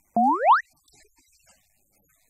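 A short cartoon-style 'boing' sound effect added in editing: a quick upward swoop in pitch lasting about half a second, just after the start.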